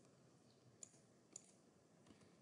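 Two faint computer mouse clicks, about half a second apart, a little under a second in, over near silence.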